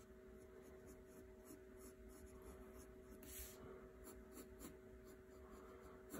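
Faint scratching of a graphite pencil on drawing paper in short strokes, one a little louder about three and a half seconds in, over a faint steady hum.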